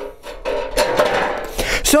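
Metal oil pan scraping across concrete as it is slid under the car, with a faint metallic ring.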